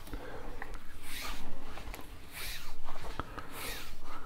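Paracord rasping as it is pulled through a woven knot mat: three drawn-out pulls about a second and a half apart, with a few light handling clicks.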